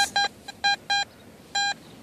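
Garrett AT Gold metal detector sounding five short beeps, all at the same steady pitch, as its coil passes over a buried target that reads about 76 on its display.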